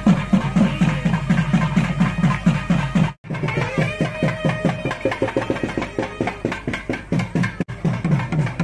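Nadaswaram playing a sustained, ornamented melody over rapid, even drum strokes: South Indian temple ensemble music. The sound drops out for a moment about three seconds in.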